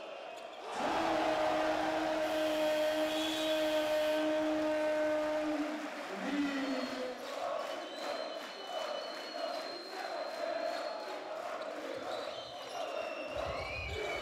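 Basketball arena sound: a long steady horn of about five seconds over crowd noise as the quarter ends, then crowd chanting with a ball bouncing on the hardwood court.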